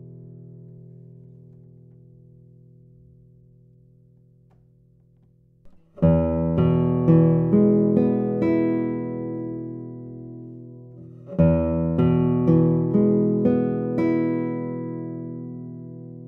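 A chord on a 1981 Daniel Friederich classical guitar (cedar top, Indian rosewood back and sides) dies away over the first six seconds. About six seconds in, a 2022 Kazuo Sato Prestige classical guitar (spruce top, Madagascar rosewood) plays a short phrase of plucked chords and notes. It plays the phrase again about five seconds later, each time letting it ring.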